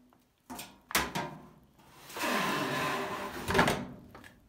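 Plastic lint screen of a Kenmore 80 Series dryer being slid back down into its slot in the dryer top. A few light knocks, then a scraping slide of about two seconds ending in a louder knock near the end.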